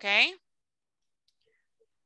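A short spoken word at the start, then near silence with a few faint clicks.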